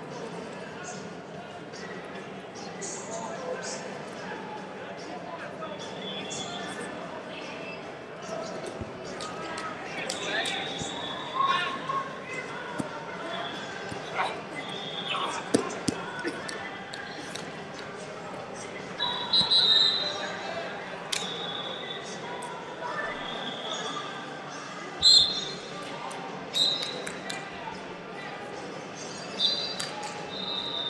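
Ambience of a large, echoing hall during wrestling: many voices murmuring in the distance, with scattered sharp thuds and squeaks and several short high-pitched whistle blasts.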